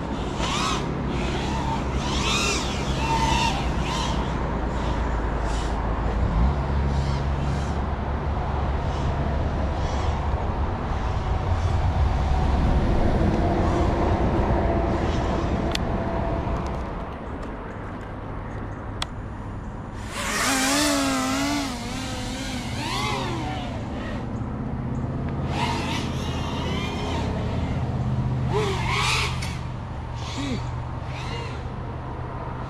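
FPV freestyle quadcopter's brushless motors and propellers whining over a steady low rumble, the pitch wobbling up and down rapidly as the throttle is worked, loudest about two-thirds of the way through.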